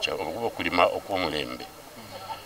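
A man's voice speaking closely into microphones.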